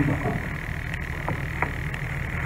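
A pause in a man's talk, filled by a steady, high-pitched background hum over a low rumble, with a couple of faint ticks.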